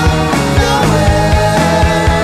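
Rock band recording with a steady, fast drum beat under long held notes.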